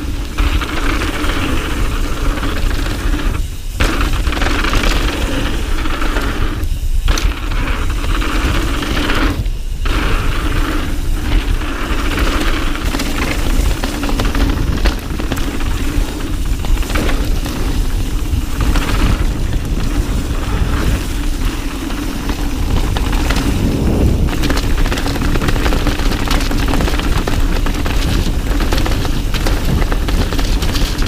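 Mountain bike riding fast down dirt trails: tyres rolling and skidding over dirt and stones while the bike rattles and clatters over the bumps, under a heavy low rumble. The sound cuts out briefly about three times in the first ten seconds.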